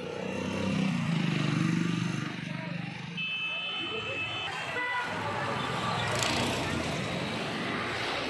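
Street traffic with a vehicle engine running close by in the first couple of seconds and a short high horn toot about three seconds in, with voices in the background.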